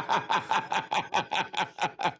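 A man laughing hard in a rapid run of short bursts, about five a second, each one sliding down in pitch.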